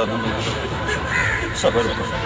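A woman crying in grief, in short broken cries.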